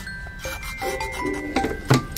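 Fingers rubbing and pressing a sticker down onto a paper planner page, with light scraping and clicks and a sharp knock near the end, under soft background music with bell-like mallet notes.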